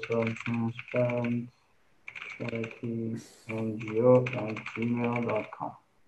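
Typing on a computer keyboard, a run of light clicks under a man's voice speaking in short stretches.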